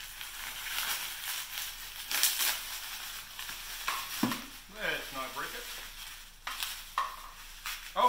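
Plastic packaging rustling and crinkling in irregular bursts, with a few sharper crackles, as a motorcycle side-view mirror is unwrapped by hand.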